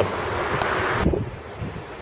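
Outdoor street traffic noise with wind on the microphone, a passing vehicle's low hum under a hiss of road and wind noise, cutting off suddenly about a second in and leaving a quieter low rumble.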